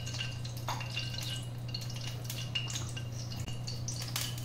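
Oil heating in an iron kadai on a gas burner, giving scattered small crackles and pops, over a steady low hum.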